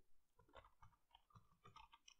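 Faint computer keyboard keystrokes: a few scattered, soft key clicks as a word is typed.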